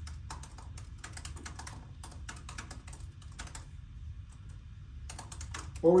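Typing on a laptop keyboard: quick runs of key clicks that thin out about four seconds in, then pick up again near the end, over a low steady hum.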